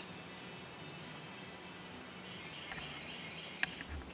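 Quiet shop background with a faint steady low hum and faint high chirping in the second half. A few light clicks come near the end.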